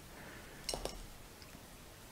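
Faint light clicks of wooden pencils knocking together and being set down on a tabletop, two in quick succession a little under a second in and a softer one shortly after.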